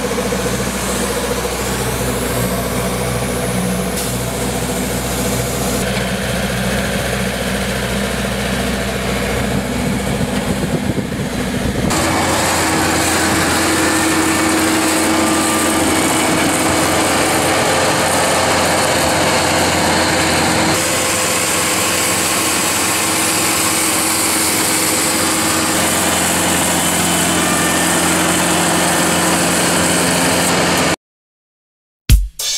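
Engines of road line-marking machines running steadily. About twelve seconds in, the sound changes abruptly to a different engine with a steady hiss over it, and it shifts again slightly a little past twenty seconds.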